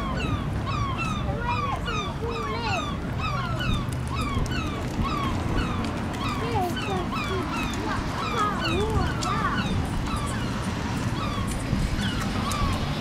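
A flock of birds calling at once: dense, overlapping short chirps and squawks, several a second, some sliding down in pitch, over a low steady rumble.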